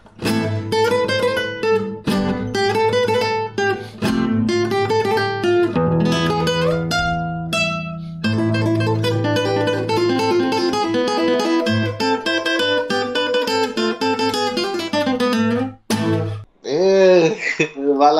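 Acoustic guitar played fingerstyle: a quick melody of plucked notes over a bass line, with a short pause about eight seconds in. The playing stops about two seconds before the end, and a voice exclaims.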